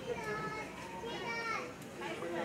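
A young child's high voice chattering, with other people's voices around it; no words are made out.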